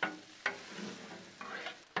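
Metal spatulas scraping and tapping across the steel flat top of a Blackstone griddle while stirring and chopping ground beef, over a steady sizzle of the meat frying. Sharp scrapes come at the start, about half a second in and again near the end.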